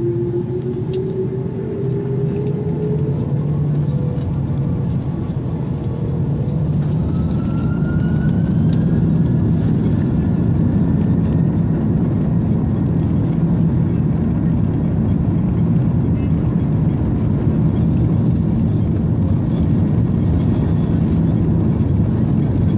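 Cabin sound of an Airbus A330-203's General Electric CF6-80E1 turbofans spooling up for takeoff: the engine tone rises in pitch over the first few seconds, then a rising whine and a step up in loudness about eight seconds in as takeoff thrust comes on. A loud, steady engine rumble follows during the takeoff roll.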